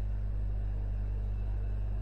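A steady low electrical hum with a faint even hiss: the background noise of the voice recording.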